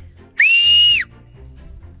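A single loud two-finger whistle, a call to summon a horse. It rises quickly to a high pitch, holds steady for about two-thirds of a second, and cuts off with a slight drop in pitch.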